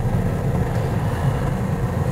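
Car driving on the road, heard from inside the cabin: a steady low rumble of engine and tyre noise.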